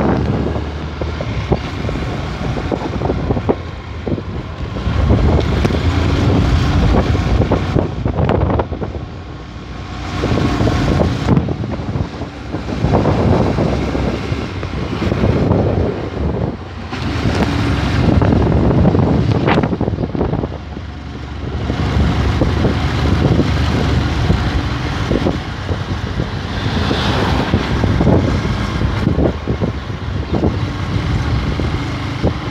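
Small motorcycle running at low speed, its engine mixed with wind rumbling on the microphone; the sound swells and fades several times.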